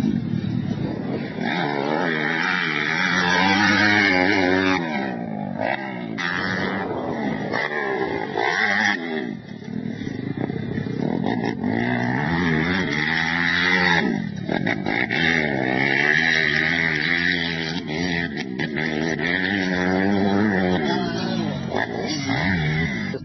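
Single-cylinder four-stroke Suzuki motocross bike being ridden hard on a dirt track, its engine pitch rising and falling over and over as the throttle is opened and shut, with brief drops in level around the turns.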